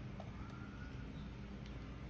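Faint room tone: a steady low hum with a faint background hiss.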